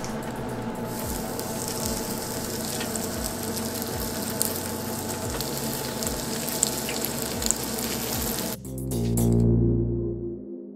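Breaded burbot patties sizzling as they are set into hot butter and oil in a frying pan, under background music with a steady beat. Near the end the sound changes abruptly to a loud low hum for about a second and a half.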